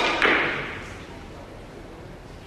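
Two sharp knocks about a quarter second apart, the second trailing off over about a second, over faint murmuring voices.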